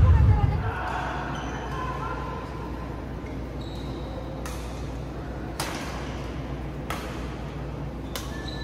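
Badminton rally on an indoor court: sharp racket hits on the shuttlecock, three or four of them a second or so apart in the second half, with short high squeaks of shoes on the court floor. Players' voices are heard in the first couple of seconds, and a loud boom fades out at the very start.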